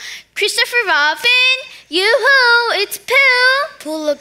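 A young girl's voice in three sing-song phrases, with gliding pitch and some drawn-out notes.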